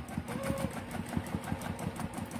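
Juki TL2010Q straight-stitch sewing machine running steadily, its needle stitching in a quick, even rhythm during free-motion quilting with the feed dogs dropped.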